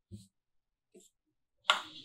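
Mostly quiet, with two faint brief sounds, then near the end a sudden sharp snap-like hit as electronic background music starts.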